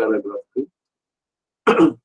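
A man says a brief syllable, then near the end gives a short, loud throat-clear.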